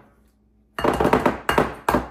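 Spoon and plastic measuring cup knocking and scraping against a glass mixing bowl as peanut butter is scraped out: a clatter about a second in, then two short knocks.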